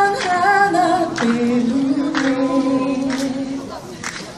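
A single voice singing a slow song, holding long notes with vibrato, in a large reverberant hall.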